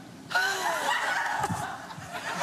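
Studio audience and host laughing, breaking out about a third of a second in, with one laughing voice sliding in pitch above the crowd.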